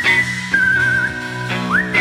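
Psychedelic rock band playing live. A high, whistle-like lead tone slides up and holds, drops to a lower wavering note, then slides up again near the end, over sustained low bass notes.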